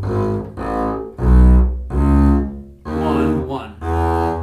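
Double bass bowed arco, playing the two-octave E major scale fingering as a run of separate notes, about six in four seconds, each roughly half a second long.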